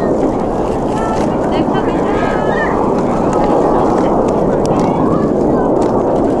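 Jet engines of a formation of BAE Hawk T1 trainers flying overhead: a loud, steady rushing noise that holds level. Faint voices come through about one to two and a half seconds in.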